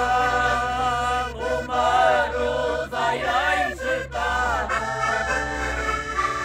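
Concertinas, Portuguese button accordions, playing a traditional Minho folk tune, with a voice singing over the steady reed chords.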